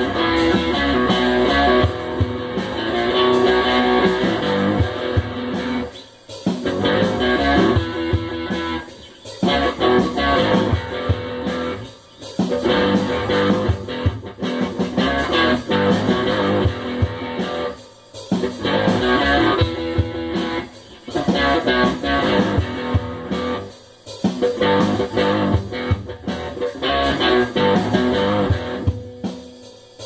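Improvised guitar jam played along with a GarageBand drum beat from an iPad. The phrases are broken by short gaps every few seconds.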